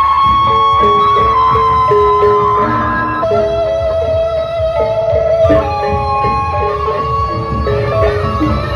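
Gendang beleq ensemble playing on the march: a bamboo flute (suling) carries a melody of long held notes over stepping lower melody lines and a dense bed of large drums.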